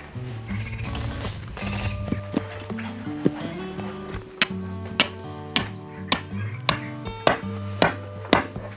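A hammer driving a tent peg into the ground: about nine sharp, evenly spaced strikes, a little under two a second, starting about halfway through. Background music plays throughout.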